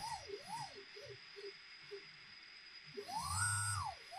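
Electric motor and gearbox of a ball-valve actuator whining as they turn the valve ball. A few short whines rise and fall in pitch early on, then a longer one about three seconds in rises, holds and falls as the valve strokes.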